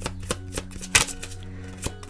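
A deck of tarot cards being shuffled by hand: a quick, irregular run of crisp card clicks and snaps, several a second.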